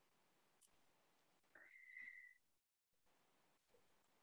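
Near silence, with one faint, brief high tone about halfway through.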